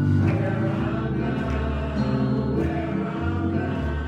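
Gospel music: a group of voices singing held notes to organ accompaniment.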